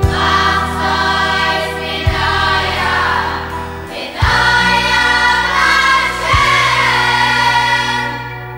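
A boys' choir singing in several parts over an instrumental backing, the bass moving to a new sustained note about every two seconds.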